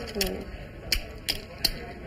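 Clay poker chips clicking together at the table: a few sharp, irregularly spaced clacks.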